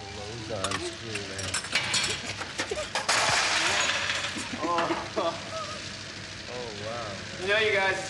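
Metal hand tools clicking and clinking at a car engine, followed a few seconds in by a loud rushing burst of noise lasting about a second and a half, with brief low voices near the end.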